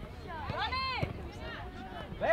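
Shouts from players and spectators across the soccer field, one drawn-out call rising and falling about half a second in, over a steady low rumble.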